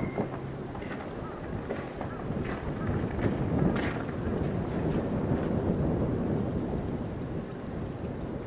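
Wind rumbling on the microphone, a steady low rumble with a few faint short crackles in the first few seconds.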